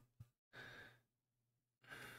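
Near silence with two faint breathy exhalations through the nose, one about half a second in and one near the end.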